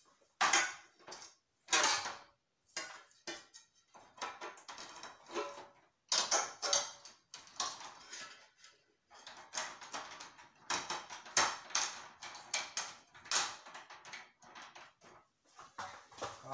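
Irregular clicks, knocks and rattles of a ceiling fluorescent light fixture being handled and fitted back together by hand.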